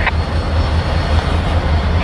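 EMD SD40-2 diesel locomotive running with a steady low rumble as it moves a cut of boxcars slowly through the yard, with a short click at the very start.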